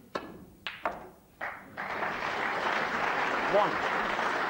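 Snooker balls clicking: the cue strikes the cue ball, then a few sharp knocks as the long red is potted. About two seconds in, the crowd breaks into steady applause for the pot.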